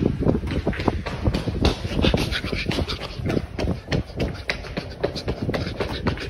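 A person running and breathing hard, panting, with quick footfalls and a loud low rumble of the phone's microphone jostling and buffeting as it is carried at a run.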